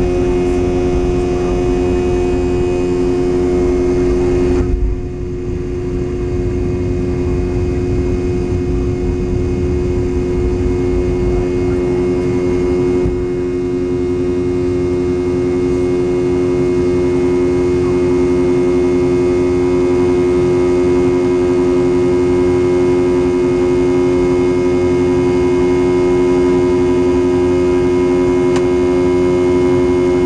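Cabin sound of a Boeing 717-200's tail-mounted Rolls-Royce BR715 turbofans at takeoff thrust: a loud steady drone with a constant whine over a rumble, heard through the takeoff roll and into the climb. The sound dips suddenly and briefly about five seconds in, and eases a little again around thirteen seconds.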